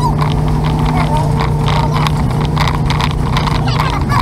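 A vehicle driving along a street: a steady, even engine and road drone with frequent small ticks and rattles over it.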